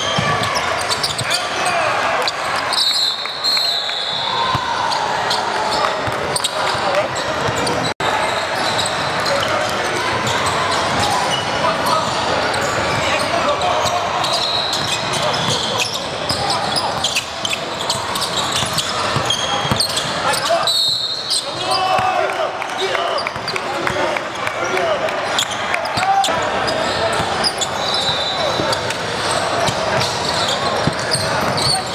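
Live basketball game in a large gym: crowd and players' voices chattering, a basketball dribbling on the hardwood floor, and a few short high sneaker squeaks. The sound drops out for an instant about eight seconds in.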